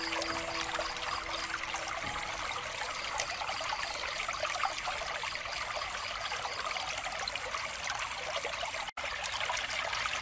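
Water trickling steadily from a bamboo fountain, with a few sustained notes of soft background music dying away in the first two seconds. The water sound cuts out for an instant about nine seconds in.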